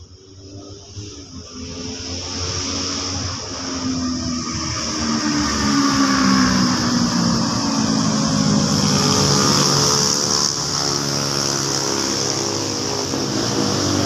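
A motor engine running, growing louder over the first six seconds and then staying loud, its pitch drifting up and down.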